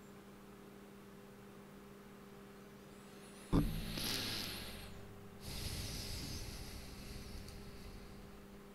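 Steady low electrical hum, with a sudden breath or sniff close to the microphone about three and a half seconds in, then a second, longer breath about two seconds later.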